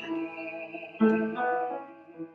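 Upright piano played as song accompaniment: chords ring and fade, with a fresh chord struck about a second in.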